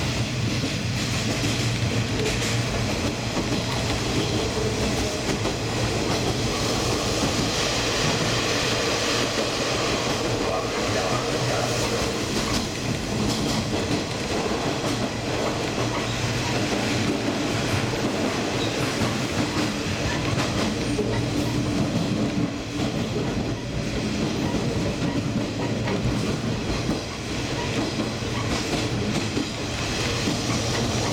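Diesel train running steadily along the track: a continuous rumble of the engine and wheels on the rails, with occasional clacks over rail joints.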